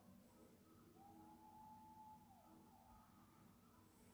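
Near silence: faint room tone, with a faint steady tone for about a second in the middle.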